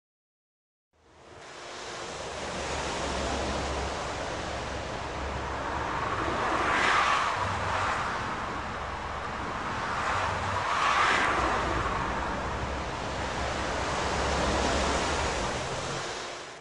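A steady rushing noise with a low rumble underneath, starting about a second in and swelling twice.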